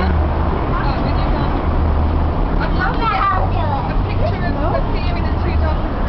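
Steady low rumble of street traffic, with scattered voices talking nearby.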